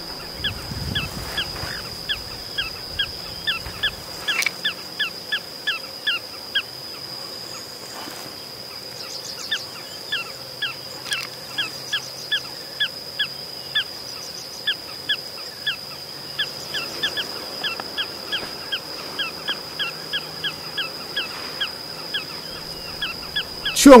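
Small pratincoles calling: runs of short, sharp, downward-sliding notes, several a second, with brief pauses, over a steady high-pitched whine.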